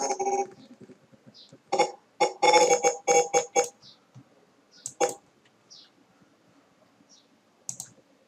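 Computer keyboard and mouse clicks at a desk. They come scattered: a single click, then a quick run of about half a dozen key presses around the middle, then single clicks later on.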